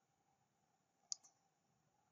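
A single computer mouse click about a second in, a sharp tick followed at once by a fainter one; otherwise near silence.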